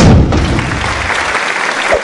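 Outro sound effect: a deep boom hits at the start and fades over about a second and a half, over steady recorded applause that carries on.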